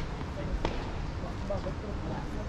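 A single faint tennis ball impact about two-thirds of a second in, over a low rumble of wind on the microphone.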